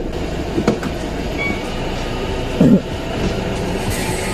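Steady low rumble of a car heard from inside the cabin as it rolls slowly in and stops, with two short knocks, about a second apart from the start and near three seconds in.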